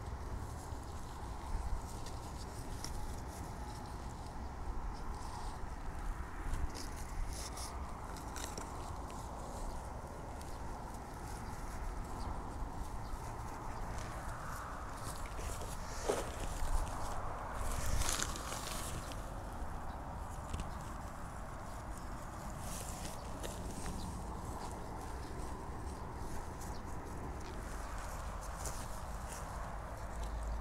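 Quiet hand-work noises while planting: soil pressed and scuffed by hand around a young shrub, then rustles and light knocks as potted plants are handled in a plastic crate. The crate handling is loudest a little past halfway. All of it sits over a steady low rumble.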